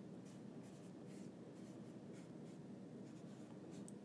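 Faint, irregular taps and scratches of handwriting on an iPad touchscreen, a few soft strokes a second over low room hiss.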